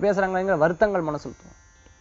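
Only speech: a man's voice talking, breaking off a little over a second in and followed by a short pause.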